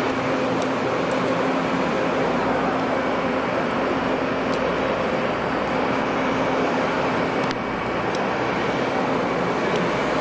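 Engine of a truck-mounted crane running steadily while the crane holds a soldier on a rope: a constant hum under an even rush of noise, with a few faint clicks.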